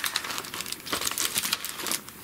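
Paper rustling and crinkling in quick, irregular crackles as a sheet of white paper is taken out of a card kit.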